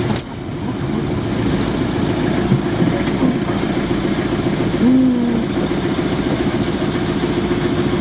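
Campervan engine running steadily as the van drives, heard from inside the cab as a constant low drone.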